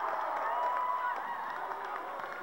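Basketball shoes squeaking on a hardwood gym floor as players run: several short squeals that slide up and down in pitch and overlap one another.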